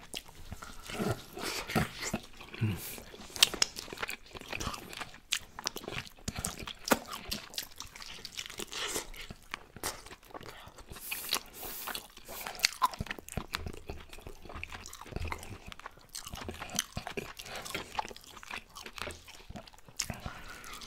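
Close-miked open-mouth chewing and lip smacking as a baked chicken quarter is bitten and the meat torn off. Dense, irregular wet clicks and small crunches.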